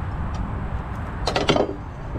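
A brief clatter of kitchenware being handled, a quick run of sharp clicks about a second and a half in, over a steady low rumble.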